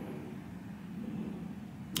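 Room tone: a steady low hum, with one sharp click near the end.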